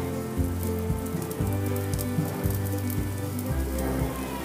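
Potato patties sizzling and crackling as they shallow-fry in hot oil on a flat non-stick pan, with background music playing underneath.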